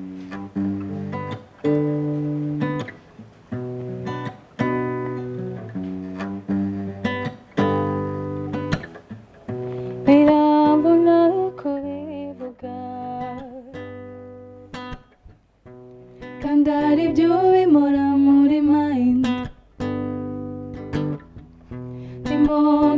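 Acoustic guitar played in a steady strummed chord pattern. About halfway through, a woman's voice comes in singing over it in two phrases with a pause between them, and starts again near the end.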